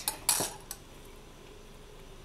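Brief metallic clinks of jewellery pliers and wire being handled, with a sharper clink about a third of a second in and a small tick just after.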